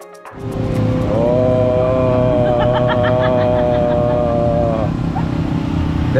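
A person's voice holding one long note for nearly four seconds, over a steady low rumble of traffic and outdoor crowd.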